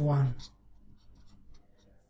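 Felt-tip marker writing on paper: faint, short scratchy pen strokes as a line of an equation is written. A spoken word trails off just before the writing.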